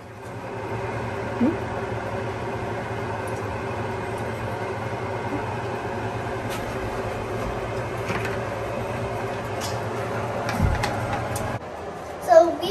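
Steady whirring hum of a kitchen stove's exhaust fan, with a few faint clicks as cooking oil is poured from a plastic bottle into a pan. The hum stops abruptly near the end.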